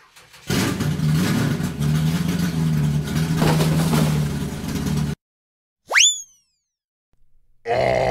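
A dubbed truck engine sound effect runs loudly and steadily with a low hum for about five seconds, then cuts off suddenly. About a second later comes a quick 'boing'-like sound effect that sweeps sharply up in pitch, and near the end a short growl-like sound effect.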